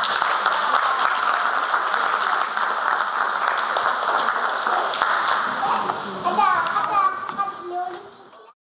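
Audience applauding, a dense patter of many hands clapping, which dies away near the end as a few children's voices are heard.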